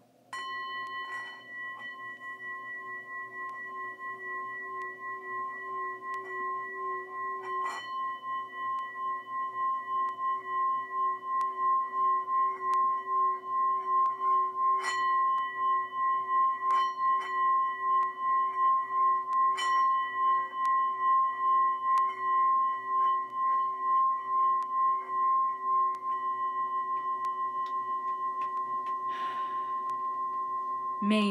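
Singing bowl sounding a sustained ringing tone with a slow, wavering pulse. It grows louder over the first dozen seconds and then holds steady.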